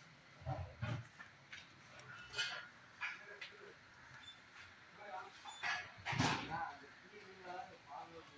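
A dog barking now and then, with voices in the background and a couple of low thumps near the start.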